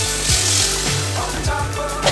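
Background music, with water splashing as it is poured into a pressure cooker of vegetables during the first second.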